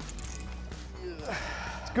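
Water splashing as a hooked bluefin tuna thrashes at the surface on a tight leader, most noticeably in the second half, over low background music.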